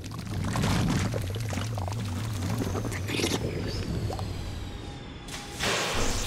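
Animated sound effect of thick glowing mutagen ooze pouring and spilling over a ledge, with a rushing swell near the end. A low droning music score runs underneath.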